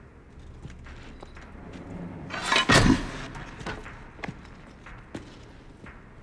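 A single heavy thump about halfway through, building briefly before it hits, followed by a few faint clicks.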